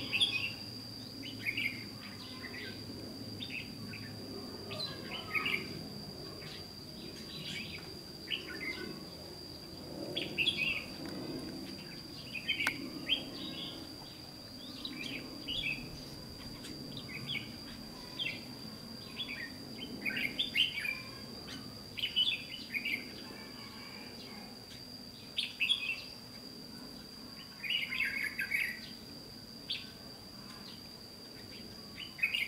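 Red-whiskered bulbuls singing short, chirpy phrases, one every second or two, over a steady thin high-pitched tone.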